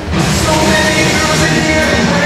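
Background music with held melodic notes over a full backing, getting louder as a new phrase comes in just after the start.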